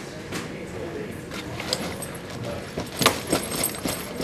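A fabric backpack being grabbed and tugged at: rustling, with a few sharp knocks and clicks clustered about three seconds in.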